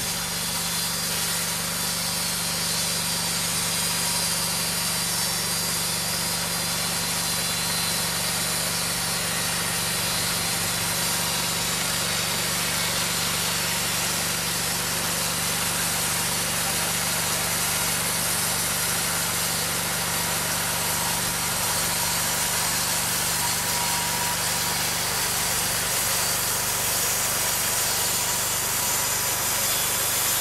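Homemade band sawmill running steadily: its gasoline engine drives the band blade through a mesquite log on an easy first pass, an even engine drone under the hiss of the blade cutting.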